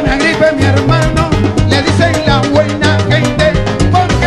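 Cuban timba band playing: a stepping bass line under dense, steady percussion and melodic lines.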